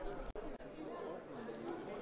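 Faint voices of several people talking in the background of a parliamentary chamber, picked up by the chair's microphone during a pause in the close speech.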